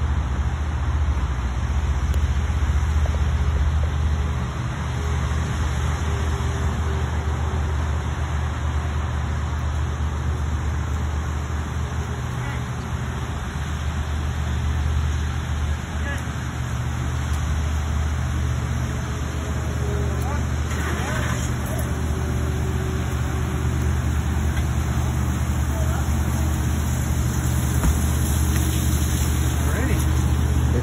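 Steady low rumble under a broad hiss of outdoor background noise, unbroken throughout.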